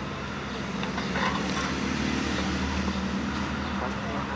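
A vehicle engine running close by, a steady low hum that grows louder about a second in and eases off toward the end.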